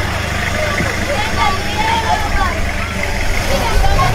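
Toyota pickup's engine running steadily as the truck drives off, with several people's voices talking over it.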